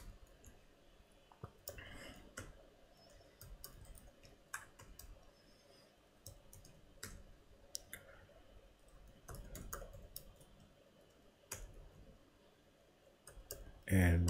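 Faint, irregular clicking of computer keyboard keys as code is typed, in short uneven runs of keystrokes.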